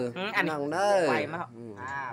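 A man's voice drawn out in long, smooth rising-and-falling glides, chanted rather than spoken, trailing off after about a second and a half.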